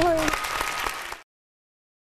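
Studio audience applause, a dense patter of clapping with a voice briefly over its start, cut off suddenly after about a second.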